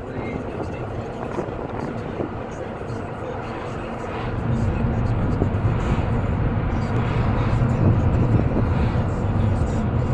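Road and engine noise of a moving car, heard from inside the car. It is steady and gets louder about four seconds in.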